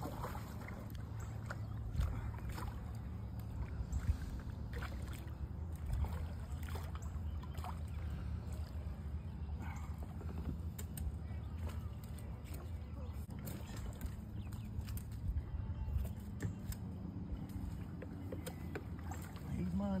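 Water sloshing around plastic kayaks over a steady low rumble, with scattered small knocks and clicks and faint, indistinct voices.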